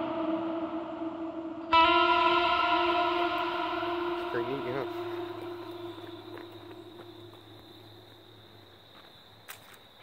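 Nine-string electric guitar: a final chord struck about two seconds in, left to ring and slowly fade away over several seconds.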